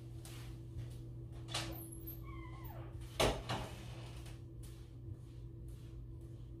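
Quiet room with a steady low hum and a few faint knocks and rustles, and a brief spoken 'all right' about three seconds in.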